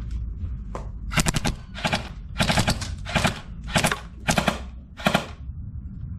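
Pellet-firing toy assault rifle, most likely an airsoft gun, shooting about seven short full-auto bursts of rapid clicks over roughly four seconds, starting about a second in. It is aimed at two flashlights lying on paving.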